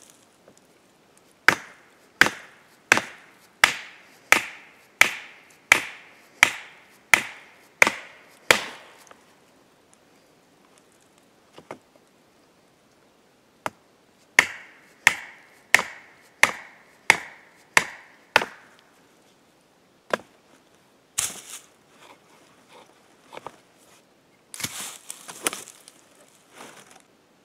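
Hammer blows driving a steel tent-pole stake into the ground: a steady run of about eleven strikes, a little over one a second, each with a short metallic ring, then a pause and about seven more. Scuffing and rustling near the end.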